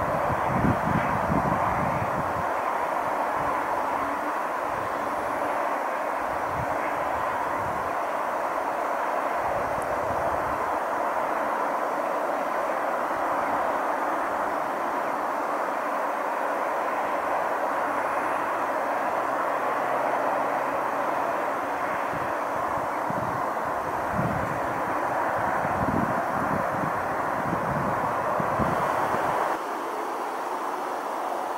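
Outdoor ambience: a steady hiss with irregular gusts of wind buffeting the microphone, coming and going, strongest near the start and again in the last few seconds.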